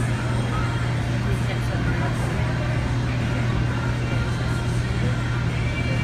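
Twin-turboshaft MH-60T Jayhawk helicopter hovering close by, a steady rotor and turbine drone with a strong, even low hum that does not change.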